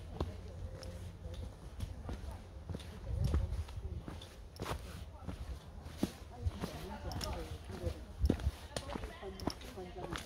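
Footsteps and the irregular sharp taps of trekking-pole tips on a rocky forest trail, with faint talk of other hikers.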